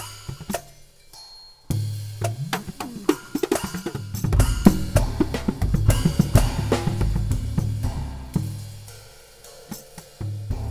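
Custom drum set of tuned drums and cymbals played with a stick in one hand and the bare other hand, in a Swedish folk-tune rhythm whose drum pitches carry the tune's melody. The playing breaks off briefly about a second in, then builds with ringing low drum tones and cymbal strikes and dies away near the end.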